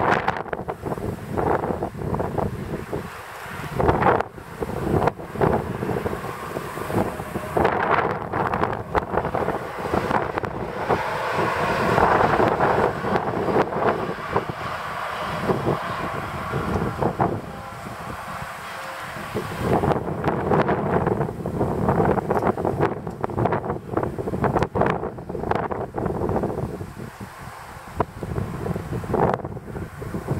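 Gusty wind buffeting the microphone, over the sound of a class E94 electric locomotive and its coaches running past, which swells toward the middle and fades as the train moves away.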